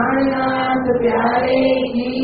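Devotional chanting in a temple setting: sung lines held on long, steady notes with slight bends in pitch.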